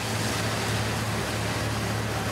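Steady, loud outdoor din with a low, even hum running under it, with no single event standing out.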